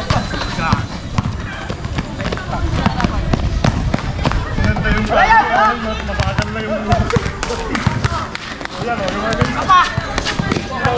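Pickup basketball game: a ball bouncing sharply on a hard outdoor court and players' quick footsteps as they run the floor, mixed with players' voices calling out.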